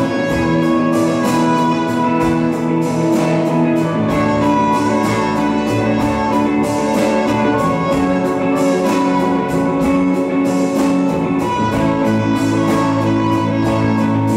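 Live acoustic folk band playing: a trumpet carries a melody in held notes over plucked strings and a steady beat.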